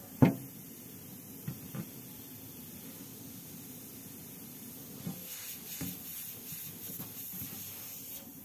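Faint steady hiss of gas escaping through punctures in the aluminium box-type freezer evaporator of an Acros frost-type refrigerator, getting stronger about five seconds in; the sign that the evaporator has been pierced and is leaking its gas. A sharp knock comes just after the start, with a few lighter taps later.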